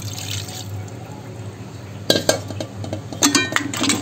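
Thin ground masala paste pouring from a steel plate into a pot of crab curry, a soft, even splashing, followed by a steel ladle clinking against the metal pot about two seconds in and again, with a brief ringing, near the end.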